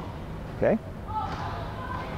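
A man's voice saying one short word, then faint steady background noise of a large indoor training hall.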